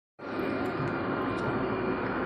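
Passenger train running along the station platform: a steady rumbling hum with a faint steady whine over it.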